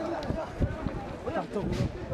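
Voices of several people talking and calling out over one another.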